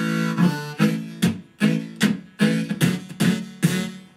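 Harmonica played into a handheld microphone: a held chord breaks off about a third of a second in, followed by a phrase of short, rhythmic chords, about two and a half a second.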